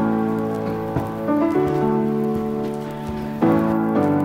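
Background music: sustained chords that change every second or two.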